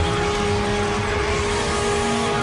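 Loud, steady rushing sound effect of an on-screen transformation, with a few held tones coming in at the start and running under the noise.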